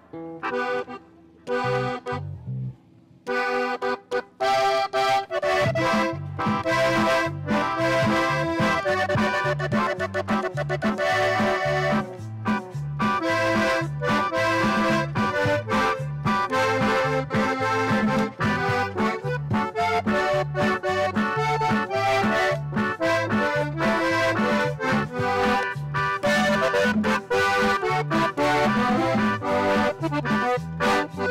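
Norteño band playing the instrumental opening of a corrido, with an accordion leading over guitar, bass guitar and keyboard. A few short chords open it, and the full band comes in with a steady beat about three seconds in.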